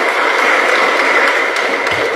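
Audience applauding: a steady, even clatter of many hands clapping.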